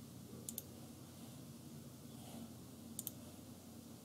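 Two computer mouse clicks, each a quick press and release, about half a second in and again about three seconds in, over faint room hiss.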